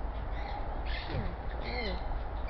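Parrots calling: a few short, harsh squawks about a second in and again near the end, over a steady low rumble.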